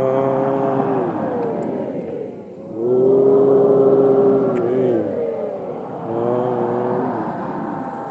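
A man's voice drawing out long chanted notes in three phrases. Each note is held steady for one to two seconds, then slides down in pitch.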